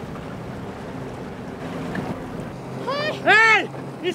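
Wind and open-sea water noise, then near the end two loud, high calls that rise and fall in pitch.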